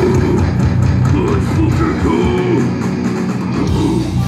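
Death metal band playing live and loud: heavily distorted electric guitars and bass over drums and cymbals, with sliding guitar lines.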